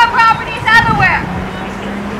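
Indistinct voices in a rally crowd, recorded faintly and heavily amplified: two short utterances in the first second, then a low steady hum underneath.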